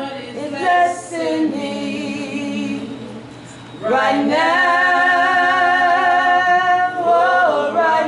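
Unaccompanied singing: long held notes with a wavering vibrato. The singing drops away about three seconds in and comes back in strongly at about four seconds.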